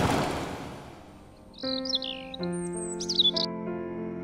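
Logo intro sting: a whoosh fading out over the first second, then soft sustained music chords begin about a second and a half in, with bird chirps twittering over them for about two seconds.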